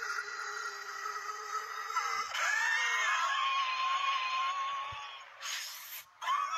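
A man wheezing in long, drawn-out, high-pitched breaths, played as an asthma attack, with a short hiss near the end.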